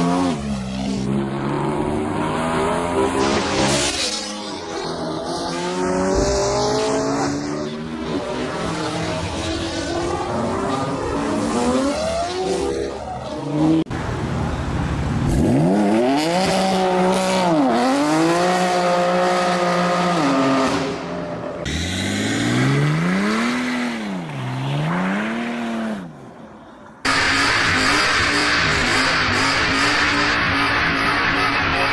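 BMW performance-car engines revving hard and tires squealing, in a string of short clips. The engine note repeatedly climbs and falls, with two quick rev blips just past the middle. After a brief dip near the end comes a dense, steady sound.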